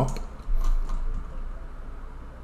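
Faint clicks of a computer mouse and keyboard, with a low thump about half a second in.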